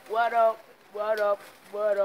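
A person's voice making three drawn-out, wordless sounds, evenly spaced about three-quarters of a second apart.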